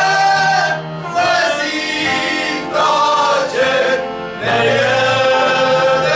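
Men's group singing a slow verbuňk (Moravian-Slovak recruiting-dance) song together in long, held notes, with short breaks between phrases.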